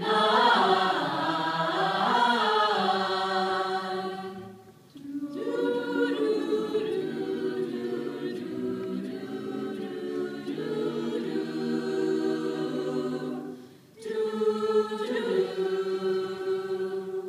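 Mixed choir singing in close harmony, holding long sustained chords. The singing breaks off briefly twice: about five seconds in and again near the end.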